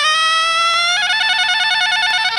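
A saxophone solo in a recorded song: one held note slides upward, then breaks into a fast trill between two notes about halfway through.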